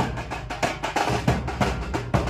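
Traditional dhol-tasha drumming: a band of barrel drums beaten with sticks in a fast, driving rhythm, with strong accented strokes a few times a second and quicker strokes between them.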